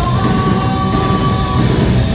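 A live rock band playing loud, with drums, bass and guitars, and one long held high note over it through most of the stretch.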